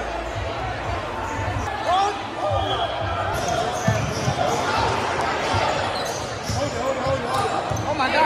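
A basketball being dribbled on a hardwood gym court, with irregular thumps, under crowd chatter echoing in a large hall.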